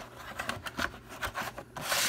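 Cardboard VHS sleeve and plastic cassette being handled: a few light scrapes and taps of cardboard rubbing against the tape, with a longer scrape near the end.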